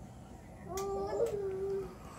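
A single drawn-out, slightly wavering vocal call lasting about a second, starting just under a second in.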